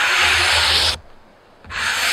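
Hand sanding along the edge of a plywood panel: scratchy rubbing strokes, one ending about a second in and another starting near the end, with a short pause between.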